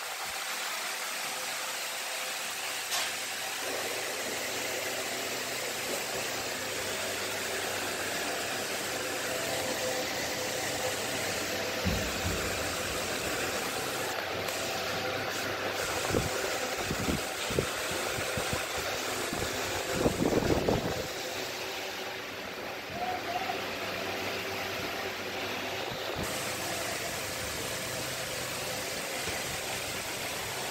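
Steady mechanical running noise, a continuous hum and hiss, with a few knocks and a louder bump in the middle.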